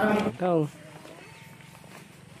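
A man chanting on a steady held note breaks off a moment in, and a short spoken 'haan' with falling pitch follows. After that there is only faint background sound.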